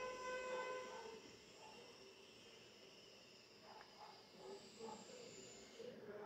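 Very faint: a steady high tone with overtones fades out about a second in. After it comes a soft hiss from the lidded pan of eggs simmering in tomato sauce.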